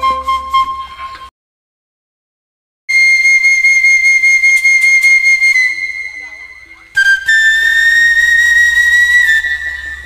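Gambang kromong music: one piece fades out about a second in and gives way to a moment of dead silence, then the next piece opens with long held high notes on a bamboo flute (suling), stepping down in pitch twice.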